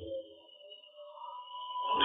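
Faint background music of a few sustained, steady tones under a pause in the narration.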